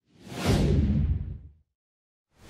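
Whoosh sound effect for an animated logo transition: a rush of noise that falls in pitch into a low rumble, lasting about a second and a half.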